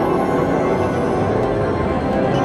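Video slot machine playing its free-spins bonus music through its speakers, a steady tune that marks a win of three free spins.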